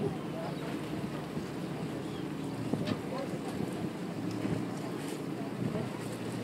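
A whale-watch boat's engine running with a steady low hum, with wind blowing across the microphone.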